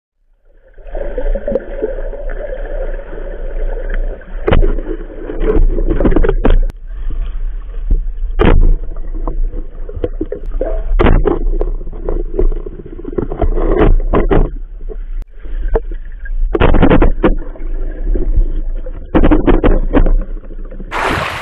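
Muffled underwater sound picked up by a submerged camera: a steady low hum with many irregular knocks and bumps as the camera is handled and moved through the water.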